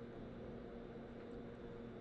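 Quiet room tone: a faint steady hum and hiss with no distinct sounds.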